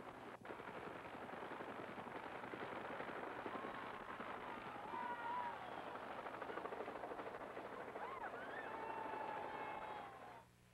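Helicopter rotor beating in a fast, steady run of thuds.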